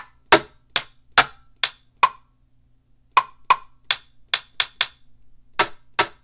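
Rim shot drum samples previewed one after another from a sample browser: about a dozen short, dry clicks at uneven spacing, each a slightly different hit, with a pause of about a second in the middle.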